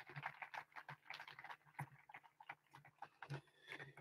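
Near silence, with faint, irregular taps and clicks over a steady low electrical hum.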